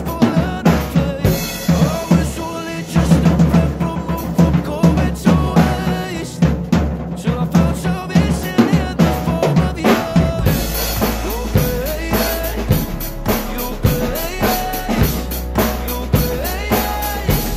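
Acoustic Pearl drum kit played to a pop ballad's recorded track: kick drum, snare and rimshots in a steady groove. About ten seconds in the playing gets fuller, with more cymbal wash and a heavier low end.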